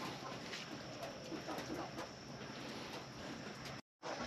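Faint, quiet background with light rustling and small handling noises from aloe plants being pulled apart for repotting; the sound cuts out completely for a moment near the end.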